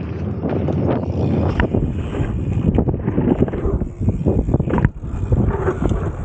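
Wind buffeting the on-bike camera's microphones as a jump bike rolls over a dirt track, with tyre noise and scattered knocks and rattles from bumps.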